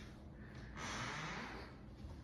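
A single breath or sniff close to the microphone, a soft rush of air lasting about a second.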